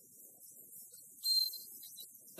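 A short, high-pitched whistle blast of about half a second, a little over a second in, over a faint steady hiss: a referee's whistle, fitting a kick-off signal.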